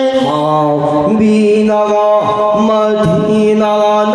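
Slow, chant-like Meitei Lai Haraoba ritual singing with long held, gliding notes over a steady low drone.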